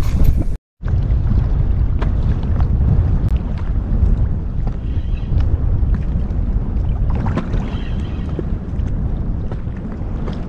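Steady low wind rumble on the microphone over choppy open water, with faint small splashes. The sound drops out briefly just under a second in.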